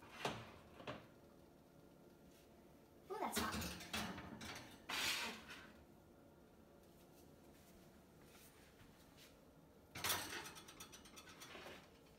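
Baking dishes being set onto a metal oven rack: a glass dish a few seconds in, then a ceramic dish near the end, each with a short clatter and scrape of dish and rack.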